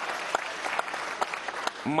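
Assembly members and guests applauding, a steady clatter of many hands clapping.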